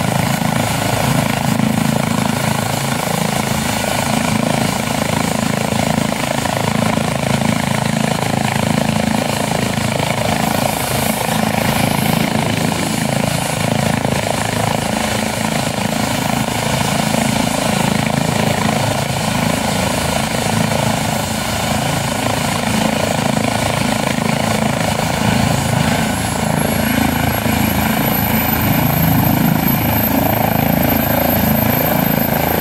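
Airbus H135 trauma helicopter (Lifeliner 2) running on the ground with rotors turning: a loud, steady twin-turbine and rotor noise. A thin high whine rises slightly near the end.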